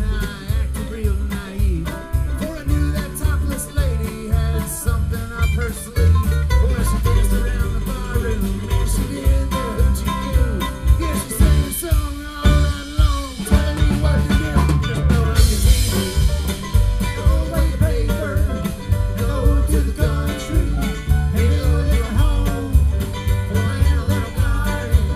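Live acoustic string band of upright bass, acoustic guitar and mandolin playing an instrumental passage with a steady, driving bass beat. The bass thins out briefly about halfway through.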